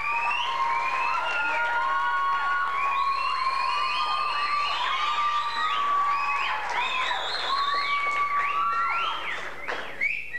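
Audience applauding and cheering, with many people whistling at once: overlapping whistles sliding up and down and held over the clapping, dying down near the end.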